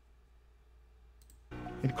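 One or two faint computer mouse clicks about a second in, resuming playback of a video. The video's sound then comes in with background music and a man's voice just before the end.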